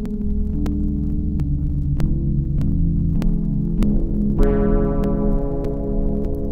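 Sequential Prophet Rev2 polyphonic synthesizer playing held, layered chords over a low, throbbing bass that steps from note to note, with short clicks ticking through it. About four and a half seconds in, a brighter chord with many overtones comes in and holds.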